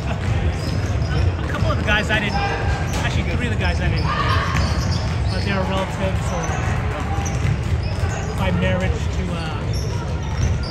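A basketball dribbled on a hardwood gym floor, with voices calling out across the echoing gym.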